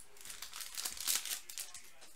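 Foil wrapper of a baseball card pack crinkling and tearing as it is pulled open and the cards are slid out, loudest just after a second in, then fading.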